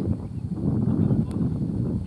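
Uneven low rumble of wind on the microphone, with faint distant voices and one short click a little past halfway.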